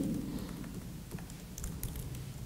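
Computer keyboard typing: a few light, scattered keystrokes, most of them in the second half.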